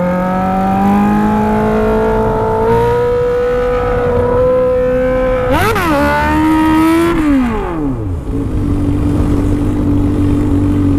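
Honda Hornet's inline-four engine through its stainless-steel exhaust, revs climbing steadily under acceleration for about five seconds. Then a sharp rev blip, the revs falling away, and a steady lower note. The rider says the exhaust is leaking a little compression.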